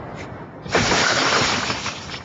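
A car's side window being smashed: a loud crash of shattering glass starting a little under a second in and lasting just over a second.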